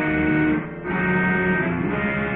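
Electric guitar playing held chords, with a short break in the sound about two-thirds of a second in before the next chord rings out.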